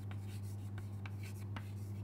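Chalk writing on a blackboard: faint, irregular taps and scrapes as letters are drawn, over a steady low hum.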